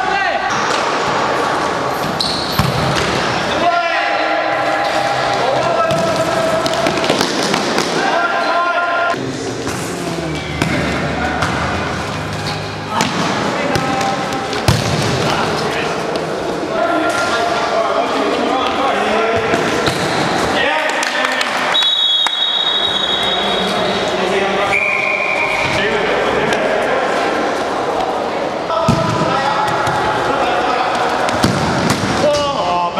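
Indoor football (futsal) being played: a ball repeatedly kicked and bouncing on a hard court, with players' voices calling out throughout.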